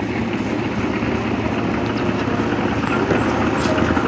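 Construction machinery engine running steadily: a continuous low, rough drone that slowly grows a little louder.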